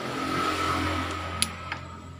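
A vehicle engine swelling and fading in the background, with a sharp metallic click and then a fainter one in the second half as the steel transmission gear clusters are handled and seated in the crankcase.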